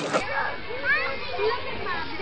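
Children playing, their voices and calls heard at a distance over a steady background hiss.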